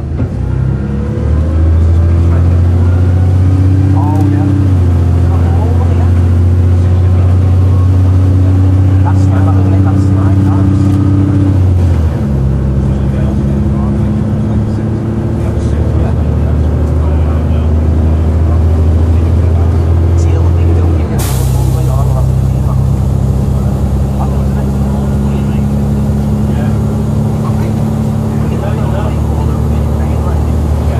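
Cummins diesel engine of a Volvo Olympian double-decker bus running under way, heard from inside on the upper deck. It builds up about a second in, and its note shifts abruptly twice, about twelve and twenty-one seconds in.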